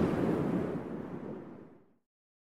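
The fading tail of an intro logo music sting: a noisy wash that dies away steadily and is gone shortly before the end.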